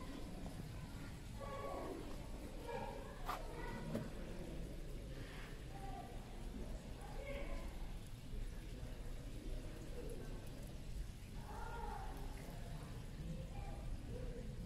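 Faint, indistinct voices talking on and off over a steady low background hum, with one sharp click a little over three seconds in.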